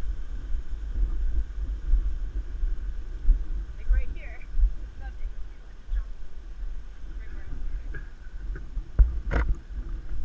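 Gusty low rumble of wind buffeting a head-mounted action-camera microphone while a hiker walks along the cliff path, with a sharp knock about nine seconds in.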